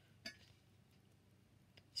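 Near silence: room tone, with one faint short click about a quarter of a second in.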